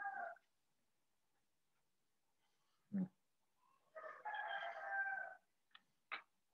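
Faint drawn-out animal calls, each with a steady pitch: the tail of one just as it starts, then a short sound about three seconds in, and another call of about a second and a half starting around four seconds in.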